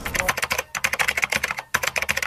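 Computer keyboard typing sound effect: a rapid run of clicks, several a second with two brief pauses, laid under text typing itself onto a title card.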